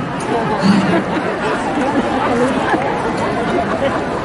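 Many people talking at once: a steady crowd chatter of overlapping voices.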